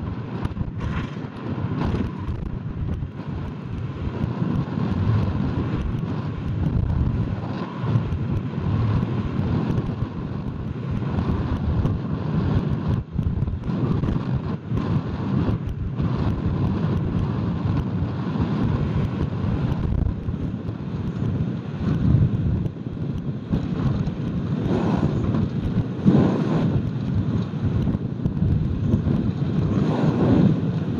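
Wind buffeting the microphone of a high-altitude balloon payload's onboard camera: a steady low rumble that rises and falls, with a few louder gusts near the end.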